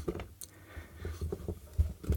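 Small bench vice being tightened by hand on a plastic air-pump case: faint clicks and low handling knocks, with a louder low knock near the end. The case is not giving way.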